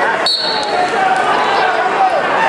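Spectators talking and shouting in a large sports hall, with a short, high referee's whistle blast about a quarter of a second in, signalling the start of the wrestling bout.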